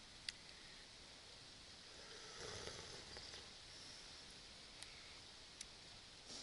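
Near silence: quiet ambience with a sharp click just after the start, a brief soft rustle in the middle, and two faint ticks near the end.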